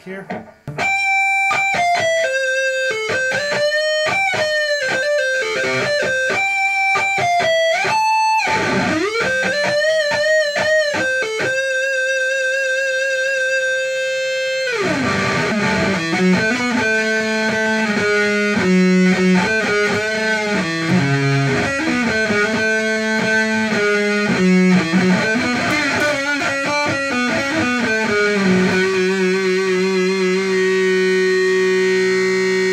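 BC Rich The Dagger semi-hollow electric guitar played through an amp and Randall 4x12 cabinet: sustained single-note lead lines with bends and vibrato, then about halfway through a slide down the neck into lower riffing and chords.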